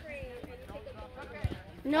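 Faint, distant voices of children and spectators across a playing field, with a few short low thumps, the clearest about a second and a half in.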